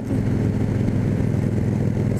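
Cruiser motorcycle engine running steadily at cruising speed while riding, a low even hum with rushing wind and road noise over it.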